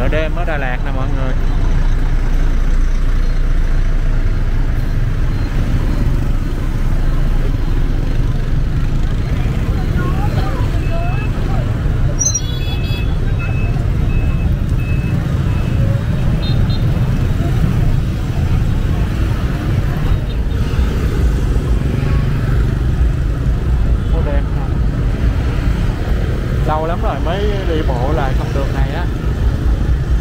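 Busy street traffic: a steady low rumble of a bus, cars and motorbikes moving slowly through a crowd, with voices now and then. Around the middle comes a run of short high electronic beeps.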